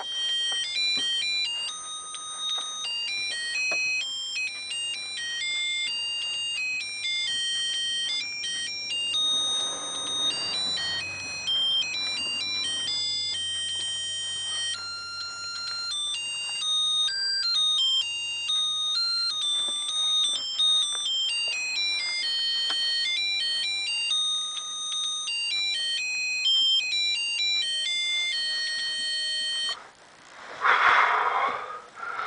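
Miniature bagpipes played by mouth: a shrill, high-pitched tune of quickly changing notes that starts abruptly and stops abruptly at the end.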